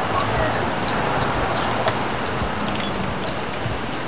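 Steady city street traffic noise, with a faint high chirp repeating about three times a second.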